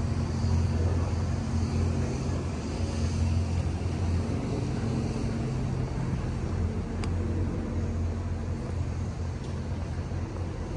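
A steady low mechanical drone, with an even hiss over it, and one sharp click about seven seconds in.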